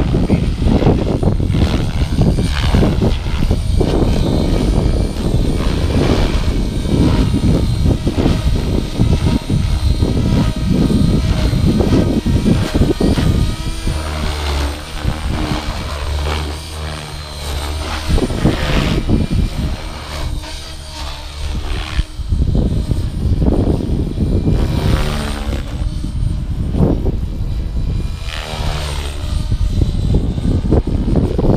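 Blade Fusion 480 electric RC helicopter on a 550-size stretch kit flying at a low head speed, its rotor and brushless motor whine rising and falling in pitch as it manoeuvres and passes. Gusty wind rumbles on the microphone throughout.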